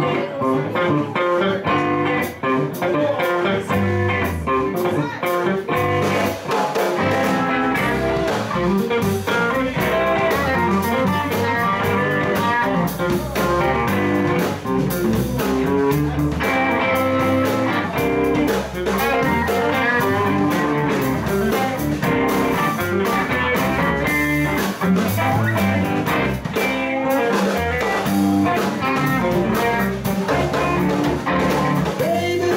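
Live blues band playing a 16-bar blues, with electric guitar over bass, drums and keyboard.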